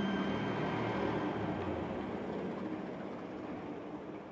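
Ambient meditation music: a soft, even noisy wash that slowly fades out, with the ring of a struck bell-like tone dying away in the first moments.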